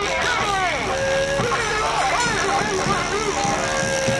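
Several people shouting and whooping at once in a noisy street crowd, with a steady low rumble underneath.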